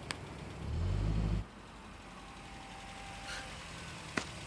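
Car engine sound effect revving as the car pulls forward, cutting off sharply about a second and a half in, followed by a faint steady background hum.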